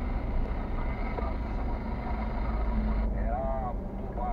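Car driving slowly, heard from inside the cabin: a steady low engine and road rumble.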